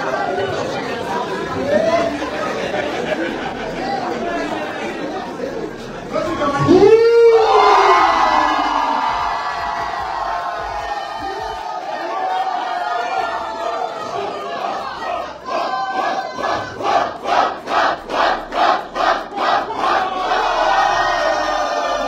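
Groomsmen chanting and shouting together while the crowd cheers. About seven seconds in there is a loud shout that rises then falls. Near the end the chant settles into a rhythm of about two beats a second.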